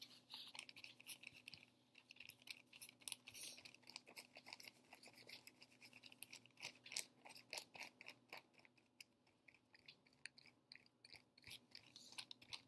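Paintbrush brushing and dabbing yellow paint onto a brown paper bag: faint, irregular scratchy strokes of bristles on paper, with the bag crinkling a little under the hand.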